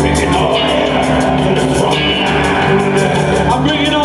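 A live world-fusion band playing a steady, driving groove, with drum kit, congas and electric bass guitar.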